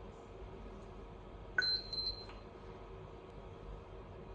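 A short, high electronic beep from the HOMSECUR video intercom, starting with a click about one and a half seconds in and lasting under a second.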